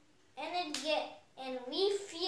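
A young boy speaking in a high child's voice, starting about a third of a second in; the words are not made out.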